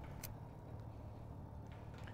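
A padlock snapping shut on a steel gate chain: one short sharp click about a quarter second in and a fainter tick near the end, over a faint low steady hum.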